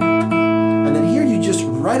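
Nylon-string classical guitar played fingerstyle: a low A bass note rings under an even arpeggio of plucked notes in A major, about three notes a second. The notes ring on as a man's voice comes in during the second half.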